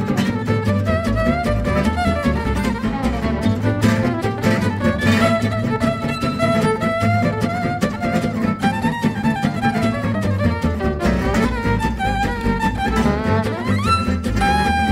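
Gypsy jazz band playing live: a violin carries the lead melody with sliding notes over a steady rhythm section, rising in a long upward slide near the end.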